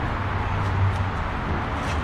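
Steady low rumble and hiss of background noise at an even level, with a faint click near the end.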